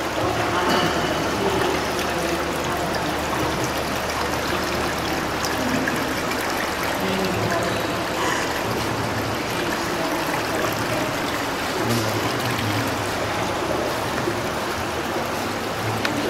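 Steady running and trickling water in an indoor swimming pool.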